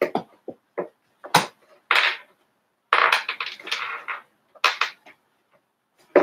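A resin ball-jointed doll being handled and set down on a box on a shelf: a string of short knocks and clicks, with a longer scuffing rustle about three seconds in.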